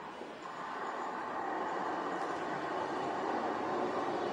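A steady rushing ambient noise fading in and growing gradually louder, with no clear notes or beat.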